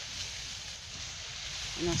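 Soft, steady rustling of dry leaves and plant cuttings being pushed with a hoe into a dug compost pit.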